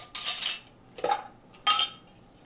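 Kitchenware being handled on a counter: a short scraping rattle, then two clinks, the second ringing briefly.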